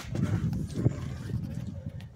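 Scuffing and rustling with small irregular knocks, one sharper knock a little under a second in: a person getting down onto a concrete floor with a handheld phone camera, with clothing and handling noise on the microphone.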